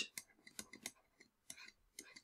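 Faint, irregular light clicks and scratches of a stylus writing on a drawing tablet.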